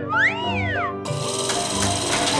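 Cartoon sound effects over background music: a whistling tone that rises and falls during the first second, then a loud hiss from about a second in, as the fire truck's water cannon unfolds.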